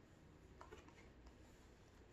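Near silence: room tone with a few faint soft ticks of paper as a hardcover picture book's page is turned.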